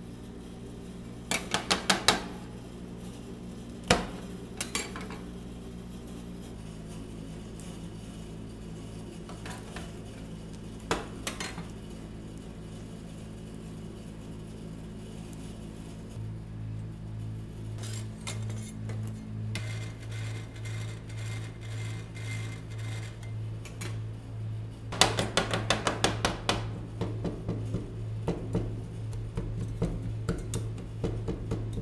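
Metal spatulas chopping grapes on the stainless steel cold plate of a rolled ice cream machine: a fast run of sharp metallic taps in the last few seconds, with a few scattered clinks earlier, over a steady low hum.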